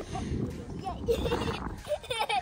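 Faint, short calls from people's voices over a low steady rumble.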